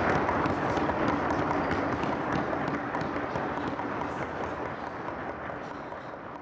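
Audience applause, many hands clapping at once, slowly dying away.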